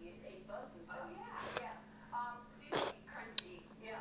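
A girl talking softly and whispering, with two short breathy bursts about one and a half and three seconds in, the second one the loudest, and a sharp click just after it. A faint steady hum runs underneath.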